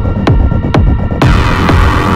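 Techno track: a deep kick drum on every beat, about two a second, under sustained synth tones. About a second in, a bright hissing high layer comes back over the beat.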